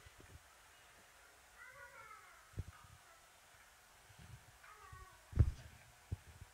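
Two short high cries about three seconds apart, each bending in pitch, with dull low thumps, the loudest near the end.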